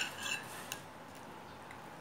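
Faint clinks and scrapes of a metal fork on a plate, with one sharper tick just under a second in.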